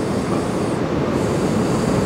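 A steady, even rush of outdoor background noise with a low rumble underneath and no distinct events.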